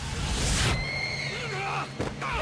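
Sound effect of a blinding magical flash: a sudden loud rush of noise peaking about half a second in, then a high steady tone, and short cries that slide up and down in pitch near the end.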